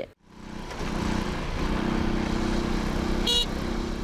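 Small step-through motorcycle's engine running steadily as it rides along, fading in after a moment of silence. A short high beep about three seconds in.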